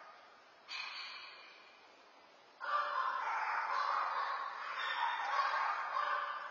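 A dog barks once about a second in, heard through a security camera's microphone. A steady, louder noisy sound starts a little before halfway and carries on.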